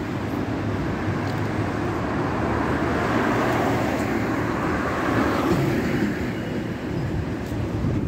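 Street traffic noise: a car passes close by, its tyre and engine noise swelling to a peak about halfway through and then fading.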